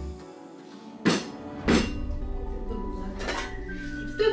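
Background music with three short clinks of hard objects being handled and set down on a work table, the first two the loudest.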